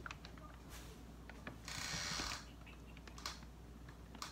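Faint handling of groceries on a table: scattered light clicks and knocks, with a short plastic rustle about two seconds in.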